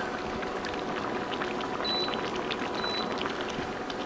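Broth-based sloppy joe sauce with pasta bubbling at a boil in a skillet, a steady crackle of popping bubbles while a wooden spoon stirs through it. Two short faint high beeps come about two and three seconds in.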